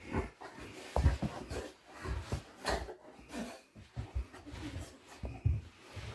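Rottweiler rolling and squirming on its back on a carpet: irregular rubbing and soft thumps of its body against the floor as it scratches its itchy, moulting coat.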